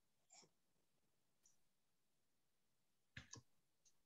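Near silence on a video call, broken by a few faint clicks, the loudest a quick pair about three seconds in.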